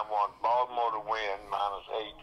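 Speech only: a person talking in short phrases.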